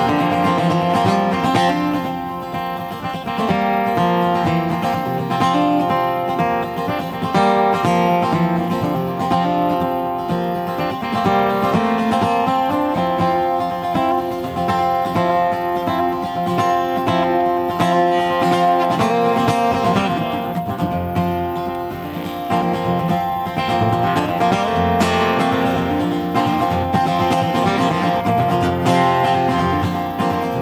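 Acoustic guitar playing an instrumental break, a picked melody over chords.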